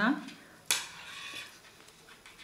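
Metal knitting needles clicking against each other as a stitch is knitted during a bind-off: one sharp click about two-thirds of a second in, trailing off into a short scraping rustle.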